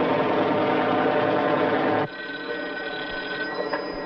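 A Sikorsky H-34 helicopter's engine and rotors running loud and steady. About two seconds in, this cuts off abruptly to a quieter office where a desk telephone rings for about a second and a half.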